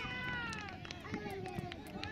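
Players and spectators shouting across an open football ground, with one long, high, falling shout at the start and shorter calls after it.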